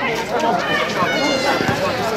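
Young basketball players and spectators shouting and calling out during play on an outdoor court, with one high, drawn-out call in the middle and a few short thuds.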